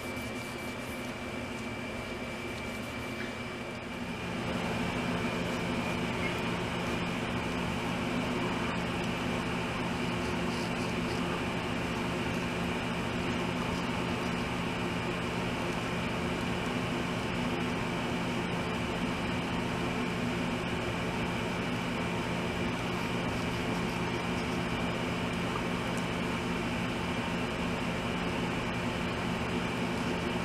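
Steady mechanical hum with a low drone of several held tones, getting louder about four seconds in and then holding level.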